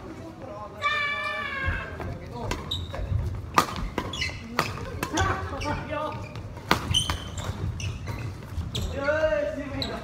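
A badminton doubles rally in a large, echoing hall: several sharp racket-on-shuttlecock hits and footfalls on the wooden floor, the loudest hit about three and a half seconds in. Players give short shouts near the start and again near the end.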